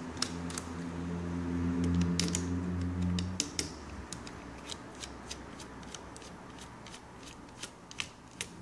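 Small precision screwdriver turning out the tiny M2.5 screws in a netbook's plastic battery bay, with irregular sharp ticks and clicks of the bit on the screw heads and plastic casing. A low, steady hum sounds under it for the first three and a half seconds, then stops.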